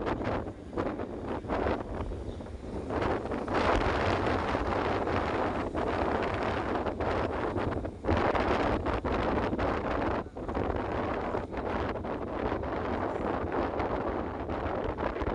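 Wind buffeting a phone's microphone from a moving vehicle, rising and falling in gusts, over a steady low engine hum.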